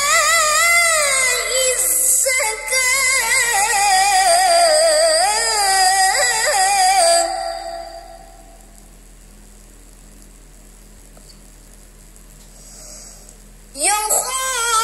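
A teenage boy's tilawah, melodic Quran recitation in Arabic: one long, ornamented phrase with wavering, gliding pitch that ends about seven seconds in. A pause of faint room sound follows for about six seconds, and the next phrase begins with a rising note near the end.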